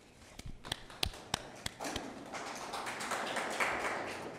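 Several sharp taps as papers are handled at a lectern microphone, followed by a denser patter of clicks and rustling that builds toward the end.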